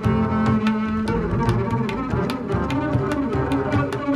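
Instrumental music led by a double bass played with a bow: a note held for about a second, then moving lines in the low register.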